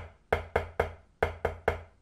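Drumsticks striking a rubber practice pad on a marching snare drum: two groups of three taps, about a second apart. Each tap is forced in as an individual stroke rather than rebounded, the tempo-limiting way of playing the taps.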